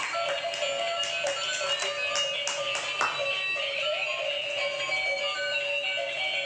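Electronic music tune played by battery-powered light-up toy cars, several notes sounding at once, with frequent short clicks throughout.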